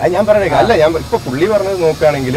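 Men's voices talking, close and loud.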